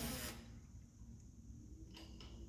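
A short clatter of metal tools being handled right at the start, then a low, steady shop hum.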